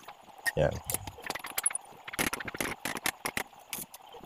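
Light, irregular metallic clicks and ticks of steel clamps and square tubing being handled on a steel work table.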